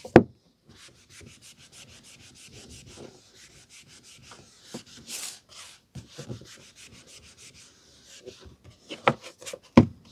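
A paperback book set down on a tabletop with a knock, then a cloth rubbed briskly back and forth over its glossy card cover, about five strokes a second, cleaning it. A few handling knocks near the end as the book is turned over.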